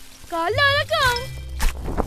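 A cartoon child's high-pitched voice saying a short line, followed by a single sharp knock about one and a half seconds in, over a low steady hum of background music.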